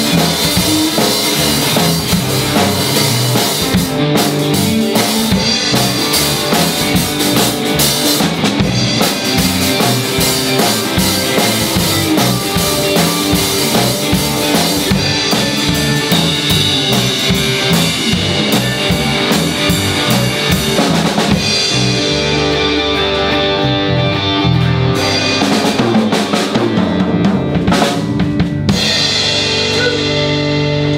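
A small rock and roll band playing live in a room, an instrumental stretch with no singing: a drum kit with bass drum and snare keeps the beat under electric guitars and electric bass. The cymbals fall quiet about two-thirds of the way through, leaving guitars, bass and a few drum hits.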